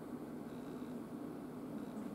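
Room tone: a steady low hum with a faint even hiss.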